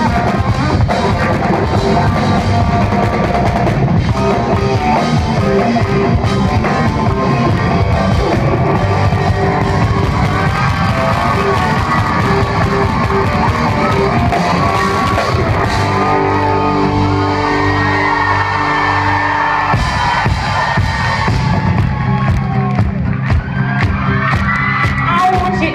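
Live rock band playing loudly, with drum kit and electric guitar.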